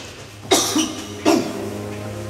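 A person coughing twice, a little under a second apart, over a steady low hum.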